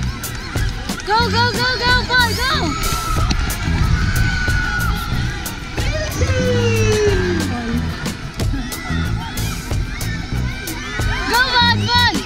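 Upbeat background music with a steady beat, with brief high-pitched voices over it about a second in and again near the end.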